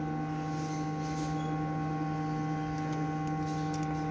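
Steady electrical hum made of several constant tones over a light hiss, with nothing starting or stopping.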